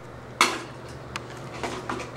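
Hard plastic toy pieces knocking while being handled: one sharp click about half a second in, then a few fainter ticks.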